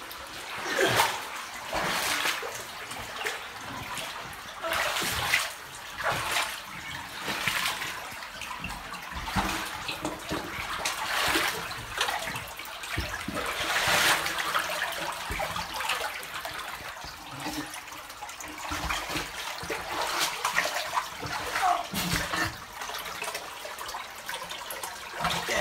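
Footsteps wading through shallow water, splashing and sloshing at a walking pace, one step every second or so.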